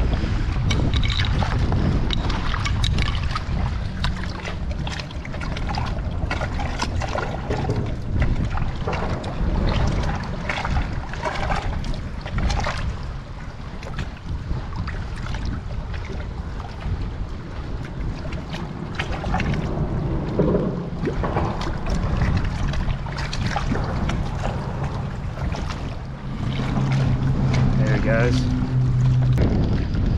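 Wind buffeting the microphone over water splashing and lapping at a rocky edge, with irregular short splashes and knocks as a caught fish is held in the shallows for release. Near the end a steady low hum joins in.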